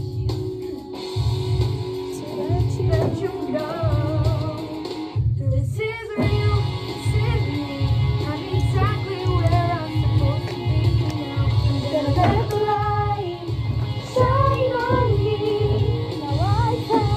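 A voice singing a pop-style melody over a backing track with a steady bass beat, with a brief break about five seconds in.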